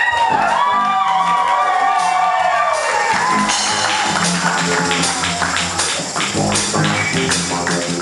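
Live jazz-funk band music: a keyboard synth lead swoops up and down in repeated pitch bends over bass for about the first three seconds, then drums and percussion lock into a steady groove under the band.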